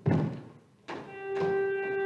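A loud thump, then a lighter knock just under a second later. About a second in, a keyboard instrument starts playing a sustained chord that holds steady.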